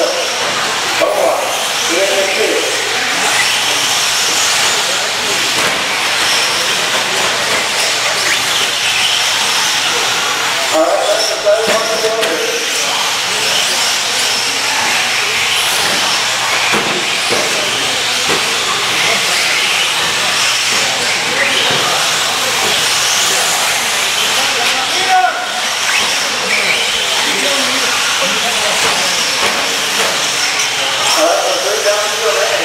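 Several electric 4x4 short-course RC trucks racing on a dirt track: a steady, high-pitched hiss with a faint whine from the motors, gears and tyres.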